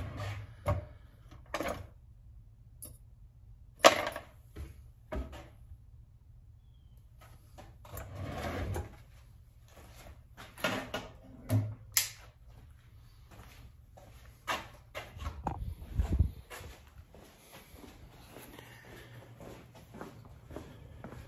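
Irregular clatters and knocks of tools and hardware being handled and moved about on a garage workbench. The loudest is a sharp knock about four seconds in; there is a longer rustle a little before halfway, a run of clatters just after it, and heavy low thumps about three-quarters of the way through.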